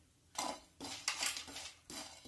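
A spatula scraping and stirring dry whole spices (dried red chillies, coriander seeds) around a nonstick frying pan as they dry-roast for a masala, in several short strokes beginning about half a second in.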